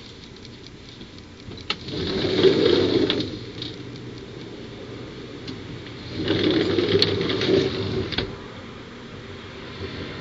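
Handling noise on a clip-on microphone: fabric rubbing and small clicks against the mic at the shirt front, in two bursts of about a second and a half each, a few seconds apart, over a steady low background.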